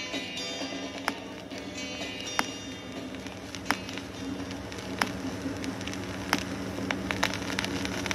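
Stylus of an Amazon Basics turntable tracking the run-out groove of a 45 rpm vinyl single after the song has faded. There is a sharp click once per revolution, about every 1.3 seconds, over surface crackle and a steady low hum.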